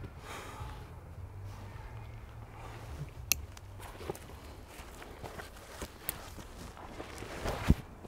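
A compagnon Element sling bag being handled and put on: rustling of the bag and strap with a few sharp clicks of strap hardware and a louder thump near the end, over a low steady rumble.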